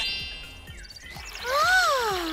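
Children's cartoon sound effects over soft background music: a brief high tinkling chime, then a pitched swoop that rises and falls.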